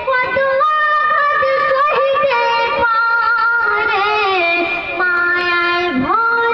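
A boy singing a Bengali gojol, an Islamic devotional song, into a microphone, holding long notes with wavering, ornamented turns between short breaths.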